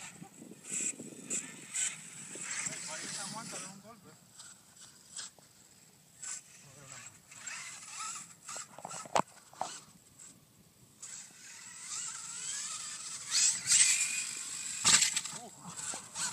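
Brushless Losi LST 2 RC monster truck driving on loose sand and dirt in bursts of throttle, with scattered sharp hits, and people talking at times.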